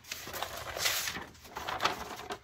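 A stiff sheet of paper napkin fused to freezer paper rustling and crinkling as it is handled, loudest about a second in.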